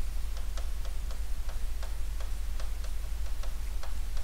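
Stylus tapping and clicking against an interactive smart board's screen while handwriting, in short irregular clicks about four a second, over a steady low electrical hum.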